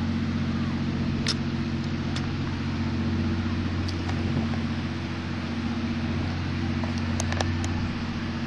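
An engine running steadily at a constant speed, a low even drone, with a few faint sharp clicks about a second in, about two seconds in and near the end.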